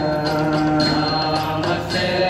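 A Hindu devotional song to Narasimha: chant-like singing over instruments and a steady beat.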